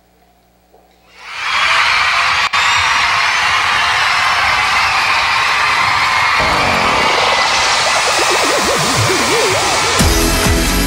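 Recorded electronic backing track starting over the sound system: a loud hiss of noise comes in suddenly about a second in and holds steady, and a wobbling synth tone swoops up and down beneath it in the last few seconds.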